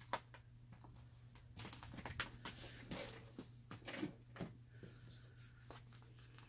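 Faint handling sounds: a scatter of light clicks, taps and rustles as hands pick up a stitched paper-and-fabric pocket and a glue bottle, over a low steady hum.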